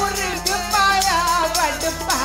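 Sikh kirtan: a woman singing the lead melody with a man's voice joining in, over tabla strokes, jingling hand percussion and a steady low drone.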